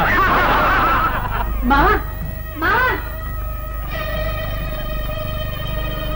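Loud laughter with no pause, then a man's two separate loud 'ha' bursts about two and three seconds in. From about four seconds, background film music holds a steady sustained chord.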